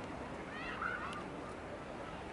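Gulls calling: a quick cluster of short, curving calls about half a second to a second in, over a steady background hiss of the sea.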